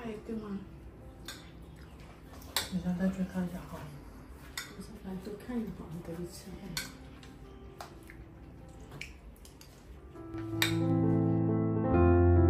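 Cutlery clinking against bowls as two people eat, with a sharp clink every second or two and brief low murmured voices. Piano music comes in about ten seconds in and is the loudest sound from there on.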